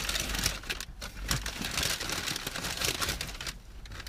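Brown paper takeaway bag crinkling and rustling as it is opened and the food inside unwrapped, in an uneven run of rustles with a brief pause about a second in.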